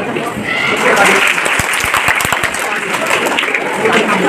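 Audience applauding, the clapping building about half a second in, with a few low thumps near the middle.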